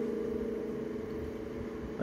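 A man's long, steady closed-mouth hum, 'hmmm', held on one pitch while pondering a question, fading slightly toward the end.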